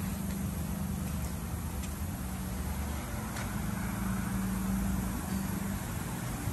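Ford Mustang engine idling steadily with the hood open.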